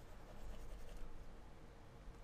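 Faint scratching of a pen stylus drawn across a graphics tablet as brush strokes are painted, over a faint steady hum.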